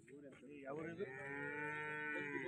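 A cow mooing: one long, low, steady call that starts about half a second in.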